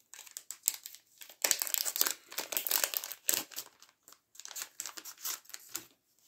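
Crinkling of a clear plastic cello bag and rustling of paper die-cut embellishments being handled, in irregular bursts that are busiest in the middle.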